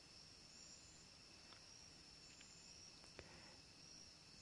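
Near silence: faint steady room-tone hiss, with one small click a little after three seconds in.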